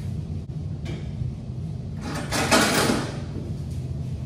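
A plastic laundry basket set down and slid onto the top of a top-loading washer, a short scraping clatter a little past halfway, over a steady low hum in the room.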